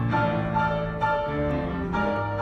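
Grand piano played as a four-hand duet: a high note repeated about twice a second over held bass notes.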